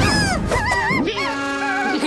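Cartoon pet characters' high, wobbling gibberish cries over background music.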